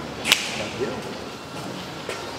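A single sharp snap about a third of a second in, over faint voices murmuring in a large hall.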